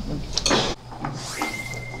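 An edited swoosh sound effect in the second half, a sweeping swish with a thin steady tone under it, after a short noisy burst about half a second in.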